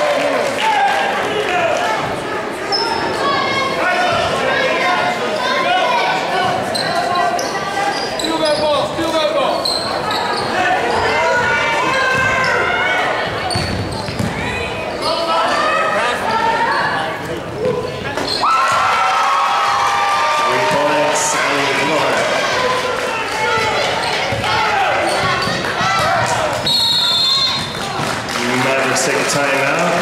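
A basketball being dribbled and bounced on a hardwood gym floor during play, amid the voices of players and spectators in a large, echoing gym.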